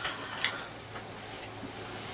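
Soft mouth sounds of someone chewing a mouthful of tomato, with a single short click about half a second in, over a low steady hum.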